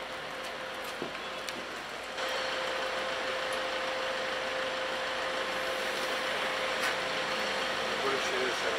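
Outdoor vehicle noise; about two seconds in it turns into a louder steady hum with one constant tone, from a motor vehicle idling close by.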